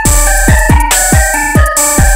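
Hard trap/drill instrumental beat: deep 808 bass hits that slide down in pitch several times a second, under a quick, staccato flute melody stepping between notes, with crisp hi-hat and snare hits on top.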